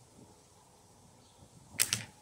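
A slingshot fired: the drawn bands released with a sharp snap near the end, heard as a quick cluster of clicks.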